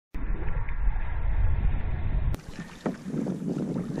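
Wind buffeting the camera microphone with water slapping against a fishing kayak's hull on choppy water, a loud, steady low rumble. About two and a half seconds in it cuts abruptly to quieter ambience on calm water, with one sharp click.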